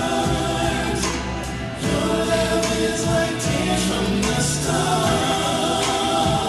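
Music with a choir singing, steady throughout. It dips briefly about a second and a half in, then comes back louder.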